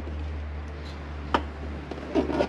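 A single sharp plastic click from a motorhome toilet cassette's pour-out spout as it is turned out and its cover is removed, over a steady low hum.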